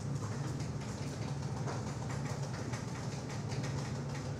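Steady low hum of classroom room noise, with faint scattered clicks and rustles over it.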